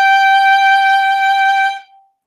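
Violin playing one long, steady bowed note, the G at the top of the second octave of a slow G major scale, stopped with the fourth finger on the A string in third position; it fades out near the end.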